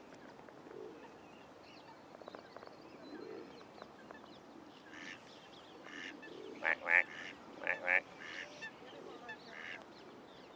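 Waterfowl calling on a pond: scattered short calls from about halfway, then four loud calls in two close pairs, and a few fainter calls near the end.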